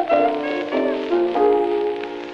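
Closing instrumental bars of a 1924 acoustic blues record: clarinet and piano playing a few held notes, with no singing.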